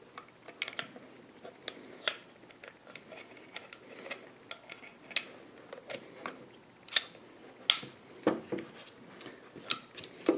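Small metal clicks and taps of a revolver's crane and cylinder being handled and fitted back into the frame, scattered irregularly, with two sharper clicks about seven seconds in.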